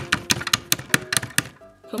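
Quick, irregular clicks and taps of a hard plastic Littlest Pet Shop figure and a wooden stick knocking against a plastic toy vending machine and tabletop, over steady background music.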